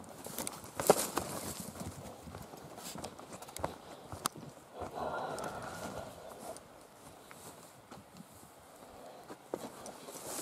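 Footsteps of a person walking over a dry forest floor of needles and twigs, uneven, with a few sharper clicks and snaps among them.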